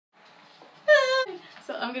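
A woman's short, high-pitched excited exclamation about a second in, followed by the start of her speech.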